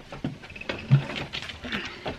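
Scattered light taps and rattles, with a soft thud about a second in, as a child's mini quad bike is wheeled out over a doorway threshold.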